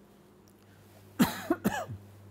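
A man coughing: three quick coughs in a row, starting a little past the middle.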